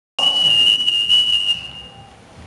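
One long, high-pitched whistle blast, held steady and then fading out about a second and a half in.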